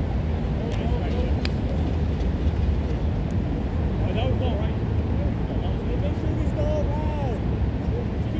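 Distant players calling out to each other across a soccer field, short rising and falling shouts that come most thickly in the second half, over a steady low rumble. A single sharp knock sounds about a second and a half in.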